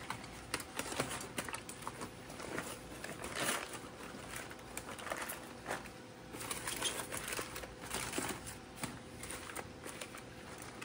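Aluminium foil crinkling in irregular bursts as gloved hands peel it open.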